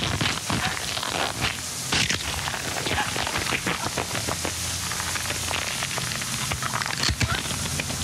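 Shower water spraying hard in a steady, crackling hiss.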